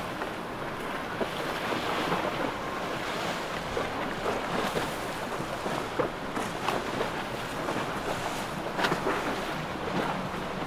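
Water rushing and splashing in the wake of a passing motorboat, mixed with wind buffeting the microphone. The sound is a steady, uneven wash with no clear engine note.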